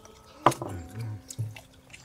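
Eating sounds during a meal: a sharp click about half a second in, the loudest sound, then a short, low murmured "ừ" and a few small clicks.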